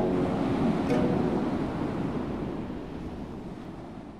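Ocean surf breaking and washing up a sandy beach, a steady rush of waves that fades out over the last couple of seconds.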